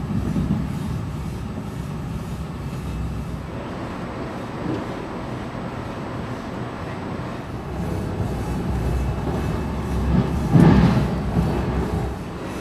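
Passenger train car in motion heard from inside the coach: a steady low rumble of the wheels on the rails, with a louder surge about ten seconds in.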